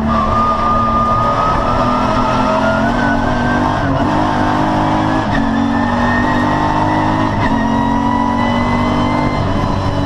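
VW Corrado VR6 race car's VR6 engine heard from inside the cabin, accelerating with its pitch climbing slowly. There are brief breaks about four, five and seven and a half seconds in.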